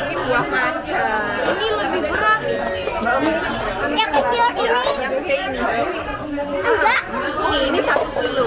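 Children's chatter: several young voices talking over one another.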